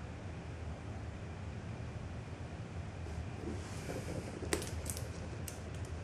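Faint scraping and a few sharp clicks from a craft knife working on a glass sheet as Monokote covering film is trimmed. These come in the second half, over a steady low hum.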